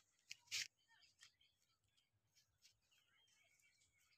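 Near silence, broken by a short click and a brief faint burst within the first second, with faint high chirps near the end.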